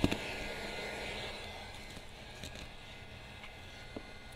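Handheld heat gun running, its fan blowing with a steady whir as it warms vinyl wrap film. A sharp click comes right at the start, and the blowing then fades away over about two seconds.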